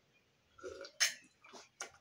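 A man drinking from a tumbler: a swallow about half a second in, then a sharp lip smack and a few soft mouth clicks as he lowers the cup.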